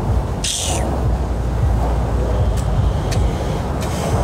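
Steady low rumble on a phone microphone outdoors, with a short hiss about half a second in.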